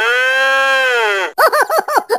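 A long high-pitched cry that rises and then falls, cut off abruptly after about a second. It is followed by quick, high-pitched laughing syllables.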